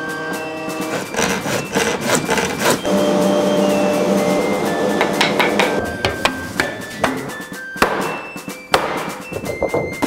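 Background music with held notes, laid over repeated sharp knocks and clatter from workshop work on plywood and plastic pipe.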